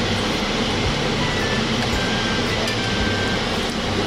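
Steady rushing noise from a gas stove, with a pan of milky tea heating on the lit burner, over a low hum.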